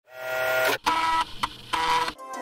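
Floppy disk drive reading a disk. Its motor whirs in a few pitched spurts, broken by short pauses.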